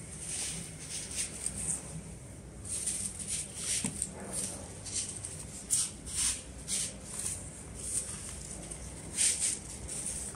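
Artificial leaves, fern sprigs and silk flowers rustling and scraping as hands push and tuck them into a floral arrangement, in short irregular brushes.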